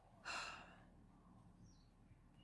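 A woman's single short audible breath about a quarter second in, lasting about half a second; otherwise near silence.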